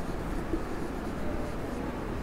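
Marker pen writing on a whiteboard: quiet rubbing strokes as a word is written.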